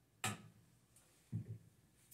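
Kitchenware knocking: one sharp click shortly after the start, then two duller knocks in quick succession about a second and a half in.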